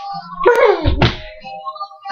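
A thump about a second in, a small child's feet landing on a wooden floor while she dances and jumps, over steady background music.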